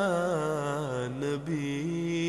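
Voice chanting the salawat in praise of the Prophet, drawing out a held, wavering note without words. The pitch sinks over the first second and a half, breaks briefly, then settles on a steady lower tone.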